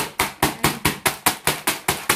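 Wooden rolling pin striking a bag of Doritos tortilla chips on a counter, about nine quick, evenly spaced strikes, crushing the chips to crumbs.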